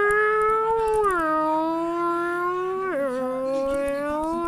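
A long howl-like call held on one note at a time, stepping down in pitch three times.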